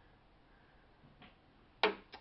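Faint room tone, close to silence, then a woman's voice starts abruptly near the end.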